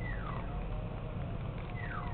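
Two faint animal calls, each a single pitch sliding downward over about half a second, one at the start and one near the end, over a low steady hum.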